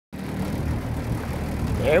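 Outboard motor running steadily, a low even hum.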